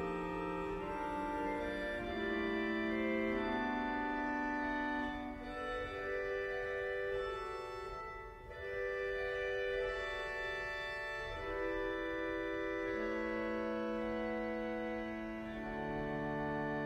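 1917 E. Lundén pipe organ playing slow held chords on its Euphone 8', a free-reed stop on the second manual. The chords change every second or two, and the sound briefly thins and drops about eight seconds in.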